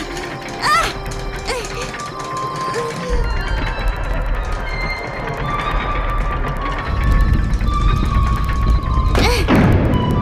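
Cartoon score music: a flute plays a slow tune of held notes over a low rumbling drone, with a few short swooping sound effects near the start and end.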